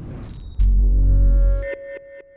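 Electronic logo sting: a rising whoosh and a brief high ping, then a deep bass hit a little over half a second in, followed by a ringing tone that repeats in fading echoes.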